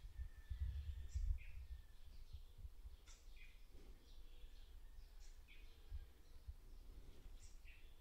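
Faint birdsong: short, high chirps with a quick downward sweep, repeating irregularly every second or two, over a low rumble of room noise.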